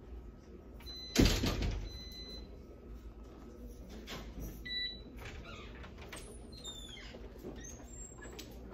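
Glass office door being pulled by its handle: one loud clunk a little over a second in as it rattles in its frame, with short high electronic beeps, then the automatic door swinging open.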